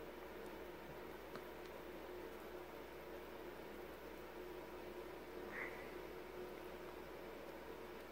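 Faint rustling of fabric and a few small ticks as hands pin twill tape to a cotton bodice, over a steady low hum of room tone; a slightly louder rustle comes about five and a half seconds in.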